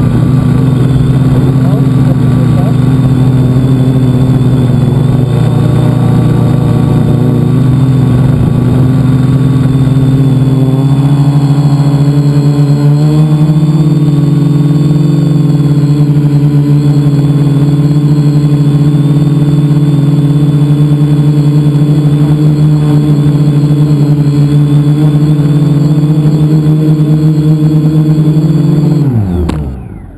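Electric motors and propellers of a multicopter, heard close up from a camera mounted on it, buzzing loudly and steadily in flight, with a small shift in pitch about eleven seconds in. Near the end the pitch slides down and the sound dies away quickly as the motors spool down.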